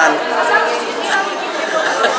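Chatter of many people talking at once in a crowded hall, with no single voice standing out.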